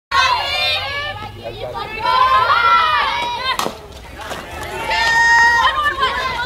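High voices yelling and chanting on a softball field, with one sharp crack of a bat hitting the softball about three and a half seconds in. A long held shout follows near the end as the ball is put in play.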